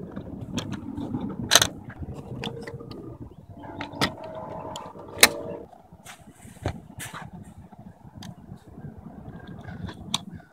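Sharp clicks and knocks from hands working the car's charge-port door and the charger, over a low outdoor rumble. A steady hum comes in for about two seconds in the middle.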